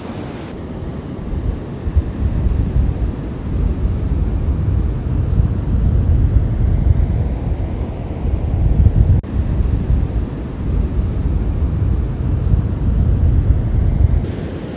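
Wind buffeting the camera's microphone: a loud, gusting low rumble.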